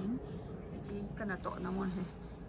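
A woman speaking in a quiet, low voice: a brief trailing word at the start, then a short phrase in the second half, over a steady low background hum.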